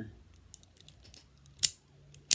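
Razortech Mini Keychain Firecracker out-the-front automatic knife firing its blade out: one sharp metallic snap near the end, after a few faint clicks of handling.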